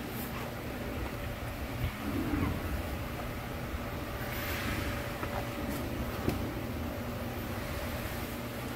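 Steady low mechanical hum with a faint steady tone, swelling briefly with a hiss about halfway through.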